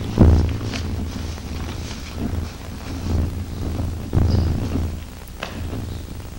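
Low electrical hum on the table microphone line, swelling with soft rumbling bumps from handling at the dais, with two sharp clicks about five and a half seconds in.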